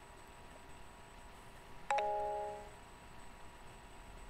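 A chime: two quick notes about two seconds in, ringing on together and fading out within about a second.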